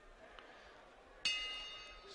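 Boxing ring bell struck once about a second in, a single ringing tone that fades away: the signal to start the round.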